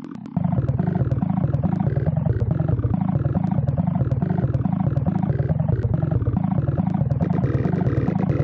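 Sparta remix intro: a loud, low, distorted sample chopped and repeated in a fast, even rhythm over heavy bass. It kicks in abruptly a moment in.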